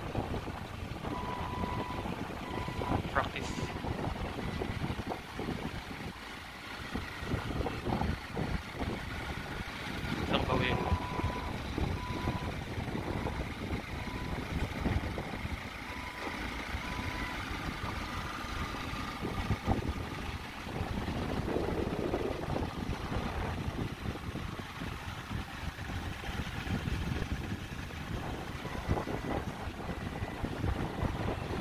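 Clark forklift running as it is manoeuvred at low speed, its warning beeper sounding in short, even beeps about once a second through the first half, with wind on the microphone.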